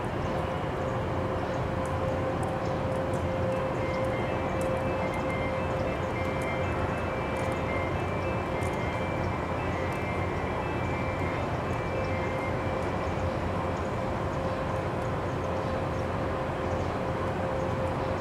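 Steady outdoor ambience: an even rush of background noise with a constant humming tone running under it.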